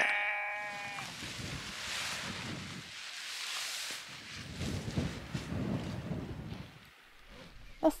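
Tent fabric rustling and flapping as a lightweight trekking-pole tent is shaken out and pitched, with irregular low buffeting in the second half. It opens with one long, high-pitched drawn-out call lasting about a second.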